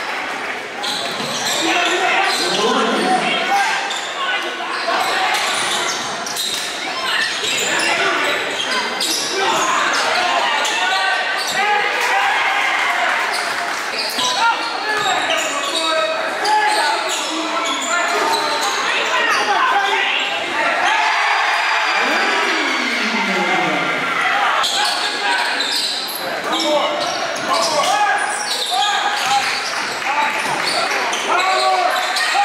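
Basketball being dribbled and bouncing on a hardwood gym floor during live play, in the echo of a large gym, amid players' and spectators' shouting voices.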